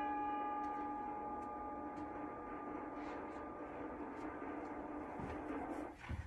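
The last chord on a mallet keyboard instrument rings out and fades into room tone, with a few faint clicks.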